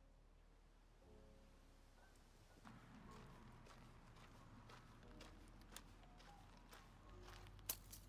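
Very quiet: soft background music fading, with faint footsteps of sneakers on a paved path and two sharper steps near the end.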